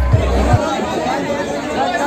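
Loud bass-heavy music with a regular beat that cuts off about half a second in, followed by a crowd of young men chattering close by.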